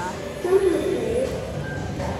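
A person's brief, indistinct voice, wavering in pitch for under a second about half a second in, over a steady low background rumble.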